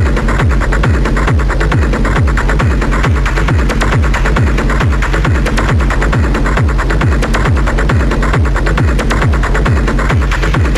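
Industrial techno track: a steady kick drum, about two beats a second, each thud dropping in pitch, under a dense layer of fast hi-hat ticks and noisy texture.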